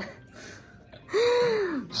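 A person's breathy vocal exclamation, like a drawn-out gasp or "ohh", about a second in: the pitch rises briefly and then slides down, lasting under a second.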